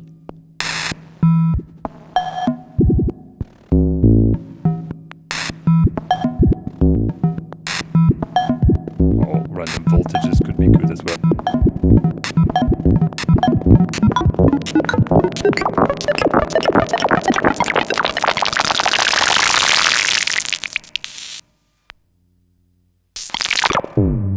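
Serge modular synthesizer patched through the Serge variable-Q filter (VCFQ), playing a sequence of short plucked FM tones over a steady low tone. The notes come closer together and grow brighter as the filter is opened. The sound cuts off abruptly about 21 seconds in, then comes back briefly near the end with a quick sweep.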